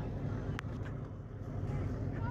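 Tour boat's engine idling with a steady low drone, with faint voices of people on board behind it.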